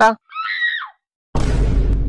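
A short, high-pitched wavering scream sound effect, then after a brief silence a low booming whoosh sound effect.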